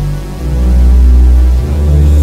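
Synth bass line playing back from FL Studio: deep, sustained notes stepping to a new pitch about every second, with no other parts under it.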